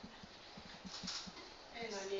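Marker pen writing on a whiteboard: a run of short, faint strokes and scratches as the letters are drawn.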